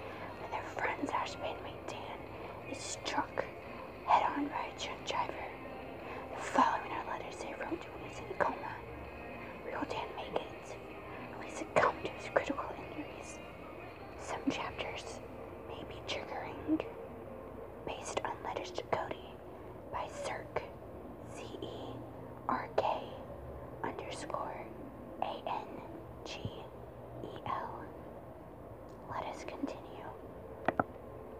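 A person whispering, in short broken phrases.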